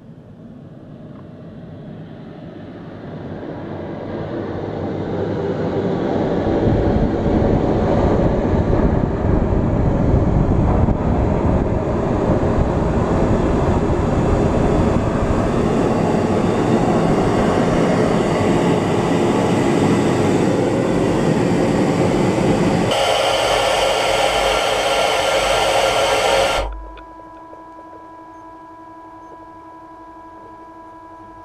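Air rushing into a space station airlock during repressurization: a steady hiss that grows louder over the first several seconds, shifts in tone a few seconds before the end and then cuts off suddenly, leaving a steady hum.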